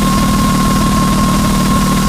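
Hard trance music in a beatless stretch: a dense, buzzing low synth drone under a steady high-pitched synth tone, with no kick drum.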